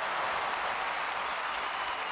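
A large audience applauding steadily, a dense even wash of clapping.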